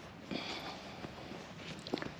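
Scottish Highland calves moving about close by on dirt and straw, with a short noisy sound about a third of a second in and a sharp click near the end.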